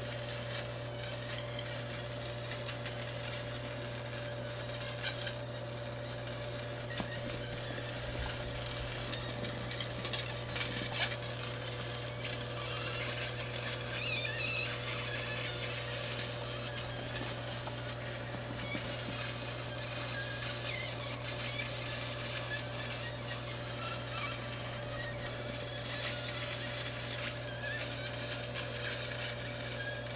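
Fiber laser engraving steel: a high fizzing hiss from the beam on the metal that swells and fades as the beam moves, over a steady low hum from the machine.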